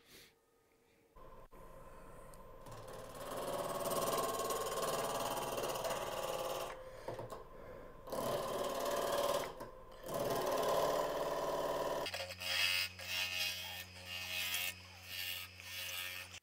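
A wood lathe spinning a natural-edge maple burl blank while a bowl gouge cuts it, the rough cutting noise coming in about three seconds in over the motor's hum and broken by short pauses. The blank has just been re-mounted off its old axis, so the gouge bites intermittently on the high spots of the wobbling wood. The motor's hum changes pitch about twelve seconds in.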